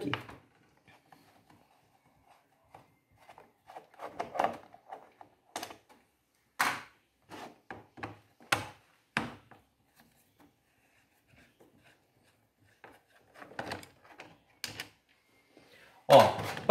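A screwdriver backing the last screws out of the plastic body of a Jacto pressure-washer spray gun. Scattered clicks and knocks of the tool and the plastic, with a few sharper knocks in the middle.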